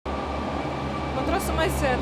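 A steady low hum of background noise, with a voice starting to speak about a second in.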